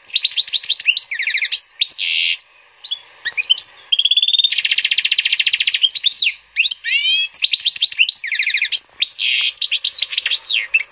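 A canary x European goldfinch hybrid (goldfinch mule) singing a long, varied song: rapid trills, quick downward-sweeping notes and a held whistle, with a short pause about a third of the way in.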